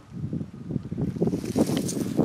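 Wind buffeting the microphone, with the crackling rustle of walking over dry straw mulch and grass, getting louder after the first half second.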